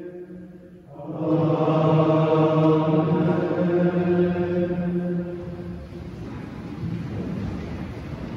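Men's voices chanting in unison, coming in about a second in on a long held note that fades out before six seconds. Then the low rustle and shuffle of monks in habits sitting down in wooden choir stalls.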